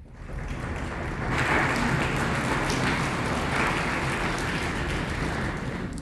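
Congregation applauding, swelling about a second in and holding steady before dying down near the end.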